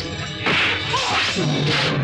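Martial-arts film fight sound effects: a few quick swishes and whacks of blows, one after another, over the film's score music.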